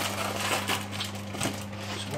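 Light, irregular clicks and taps of food and utensils being handled over a dinner plate on a kitchen counter, over a steady low electrical hum.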